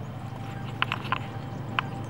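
Loose stones clacking underfoot on a rocky trail: about four short, sharp knocks within a second, the last one slightly apart, over a steady low rumble.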